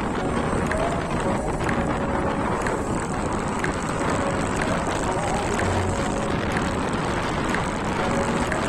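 Steady wind and road noise from a scooter riding at cruising speed, with its engine running evenly underneath and a faint tick about once a second.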